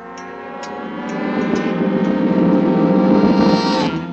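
A cartoon soundtrack swell: a dense, sustained sound of many steady tones, growing steadily louder over about four seconds and cutting off suddenly just before the end.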